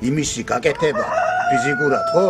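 A rooster crowing: one long, held call that begins about a second in and drops slightly in pitch as it ends, heard over a man talking.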